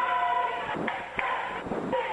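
Basketball gym ambience heard through a radio broadcast feed: a bed of crowd and court noise under a pause in the play-by-play. There is a short steady high tone at the start and a couple of light knocks later on.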